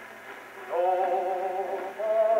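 An old record of a popular song played on a cabinet phonograph, in a pause between sung lines. A soft accompaniment passage gives way, under a second in, to loud held notes.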